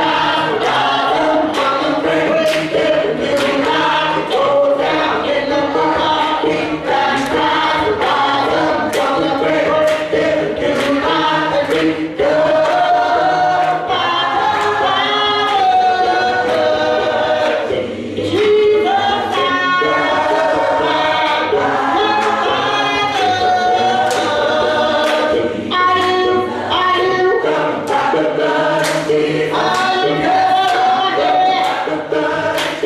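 A congregation singing a gospel praise song together, with a woman's voice leading over a microphone. Hand clapping runs along with the singing.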